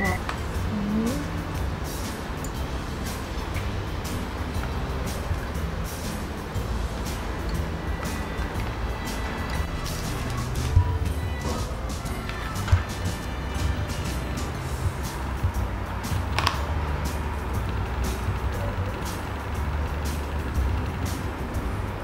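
Wind howling, heard as a deep, uneven rumble, with a couple of sharp taps in the middle.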